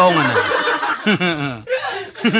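A short burst of laughter, several quick chuckles about a second in, after a drawn-out falling spoken word.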